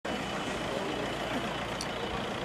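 A minibus driving slowly past close by, a steady low engine and tyre noise, with faint voices in the background.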